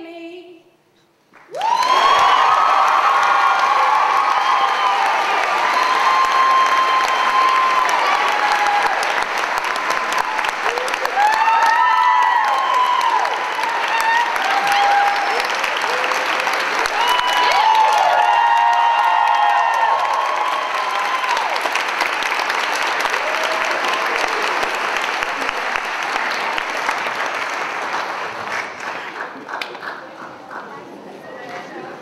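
The last notes of an a cappella girls' choir die away. After a second's pause an audience breaks into loud applause with whoops and cheers, which slowly fades near the end.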